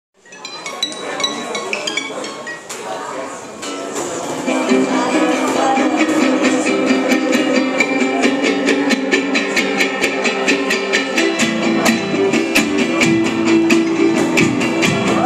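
Live acoustic guitars playing a song's instrumental intro: loose, uneven playing for the first few seconds, then settling about four seconds in into steady strummed chords over a sharp clicking beat about four times a second. Voices sound under the opening.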